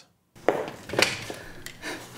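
Boom-mic production sound of a film scene playing back: a few footsteps and a breath in a room that sounds a little roomy, with three knocks about half a second apart.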